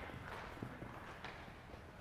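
Faint, scattered footfalls of several players sprinting and side-shuffling on artificial turf.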